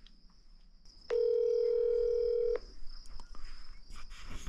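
A phone's electronic alert tone: one steady beep about a second and a half long, starting about a second in.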